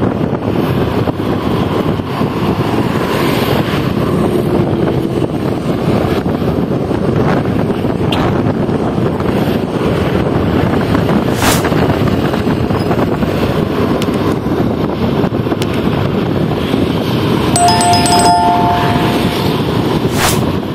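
Steady road and traffic noise with wind on the microphone. Near the end a vehicle horn sounds two notes together for about two seconds.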